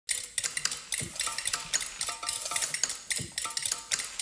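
Quick, even clicks and light clinks, about four a second, with short high notes among them: a percussive intro sound track.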